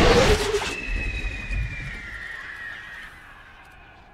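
Film sound effects played backwards: a loud blast at the start, then a high whistling whine that slowly falls in pitch and fades away.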